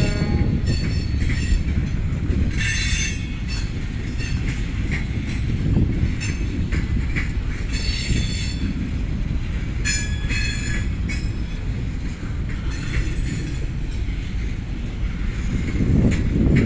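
CSX freight train of intermodal trailers and containers rolling past with a steady low rumble. High-pitched wheel squeal comes and goes several times as the cars pass.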